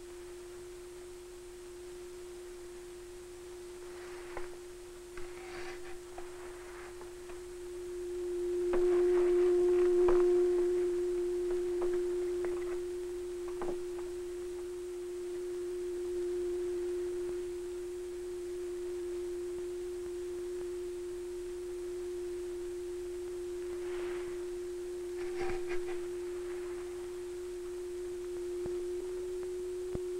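Steady pure tone of about 330 Hz from an audio oscillator played through a horn loudspeaker, setting up a standing wave against a baffle. It swells louder about eight to ten seconds in, then settles. A few faint clicks sound over it.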